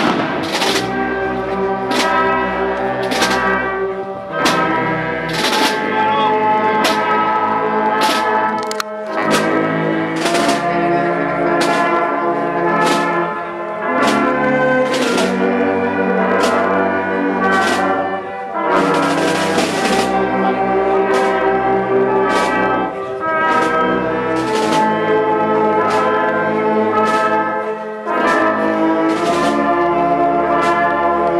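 Marching band playing a processional march: tubas, euphoniums, trombones and saxophones over a steady bass drum and cymbal beat. A longer cymbal crash rings out about two-thirds of the way through.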